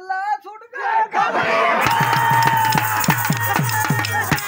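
Live Dogri folk music kicks in about a second in, loud, with quick drum beats and a long held note over them, after a brief voice at the start.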